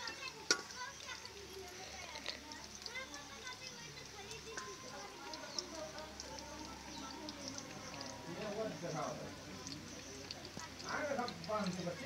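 Background chatter of nearby people and children, with louder voices near the end, over a faint crackle of koftas frying in hot oil in an iron kadhai.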